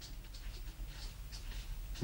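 Felt-tip marker scratching across a sheet of paper as a word is written, in a string of short, faint strokes.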